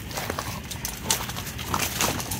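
Dogs at rough play, scuffling with a quick run of paw steps and knocks, one sharper knock about halfway through.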